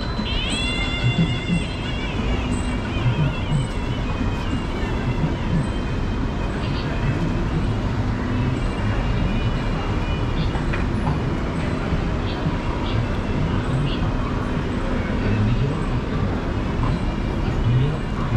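Busy city street ambience: a steady hum of traffic and passers-by, with voices in the background and brief high, wavering tones in the first two seconds.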